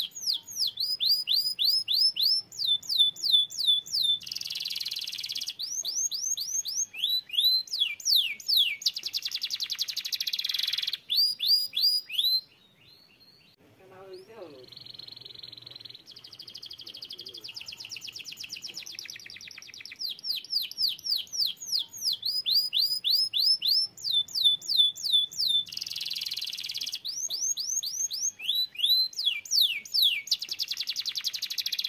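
Domestic canary singing: fast runs of repeated downward-sweeping whistled notes alternating with buzzy trills. The song breaks off for a moment about twelve seconds in, goes on more softly for a few seconds, then the loud repeated phrases return.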